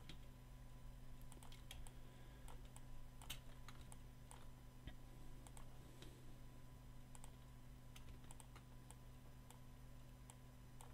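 Faint computer keyboard keys clicking at irregular moments, among them the space bar and shift key. Under them runs a low steady hum.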